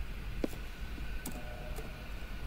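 A few short, sharp clicks of computer keys as a new number is typed into a field, over a steady low hum.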